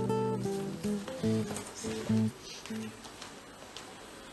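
Background guitar music: a slow run of plucked notes that thins out and ends about three seconds in.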